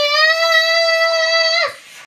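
A young boy singing one long held note, steady in pitch, which breaks off about a second and a half in.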